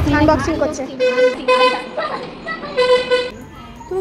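A horn tooting three times, short, short, then a little longer, over women's voices talking.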